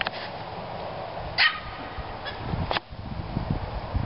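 A dog gives one short, sharp bark about a second and a half in. A fainter sharp click follows near three seconds.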